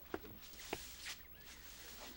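Quiet, faint brushing of a straw broom sweeping paving, with two light taps of footsteps.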